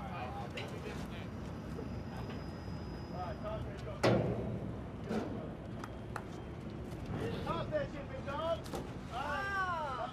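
Steady low drone of boat engines working the bridge bays, with one sharp knock about four seconds in, the loudest sound of the moment, and voices calling in the background toward the end.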